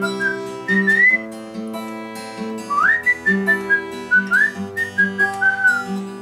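A man whistling the song's melody hook in short high phrases with upward slides, a phrase near the start and a longer one from about three seconds in, over an acoustic guitar played through the chords of the bridge.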